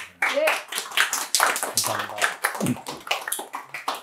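A small audience applauding, the individual claps distinct and uneven, with a few voices among them.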